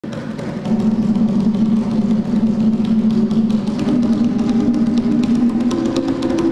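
Solo hand drumming: rapid, dense strokes on hand drums in a continuous roll over a sustained low drum tone, which rises in pitch near the end.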